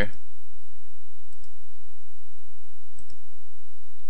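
A few faint computer mouse clicks placing footings in the software, a pair about a second and a half in and another pair about three seconds in, over steady background noise.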